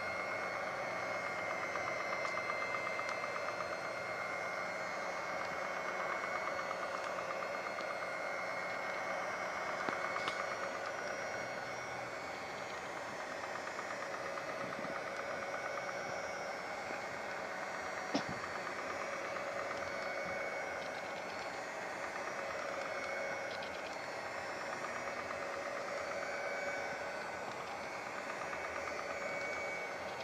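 Electric mixer running steadily with spiral dough hooks turning through a thick dough: a continuous motor whine with a few held tones, broken by a couple of brief clicks.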